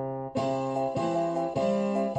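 Instrumental keyboard music: sustained chords over a bass line, changing roughly every half second to two-thirds of a second.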